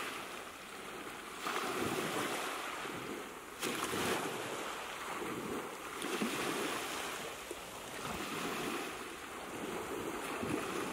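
Sea surf washing in and drawing back, a rushing noise that swells and eases every two seconds or so.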